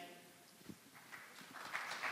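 Audience applause: silence, then scattered claps starting about a second in that thicken into a steady, building round of clapping.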